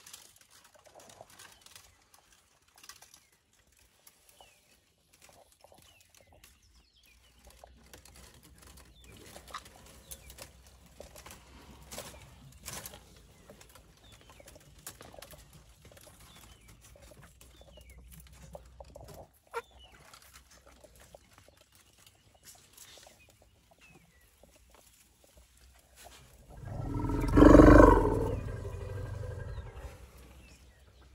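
Faint soft clicks and rustles from an African elephant calf comfort-suckling at an adult female, then one loud, low, pitched elephant call about 27 seconds in that fades over about two seconds.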